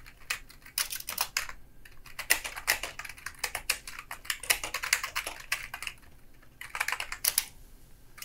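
Typing on a computer keyboard: quick runs of key clicks with short pauses between them.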